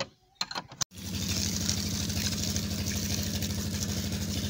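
A few sharp taps of a hand-held stone on a bolt, then, about a second in, a steady pumping engine or motor running with a low hum while water gushes and splashes from its outlet pipe.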